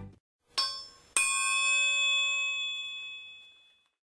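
Two struck, bell-like metallic chimes. A short one comes about half a second in, then a louder one just over a second in rings out with several clear tones for about two and a half seconds before fading.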